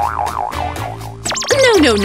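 A cartoonish warbling sound effect, a tone wobbling up and down about five times a second for the first second, over steady background music. It is followed by a falling comic sound effect and a woman saying "No, no".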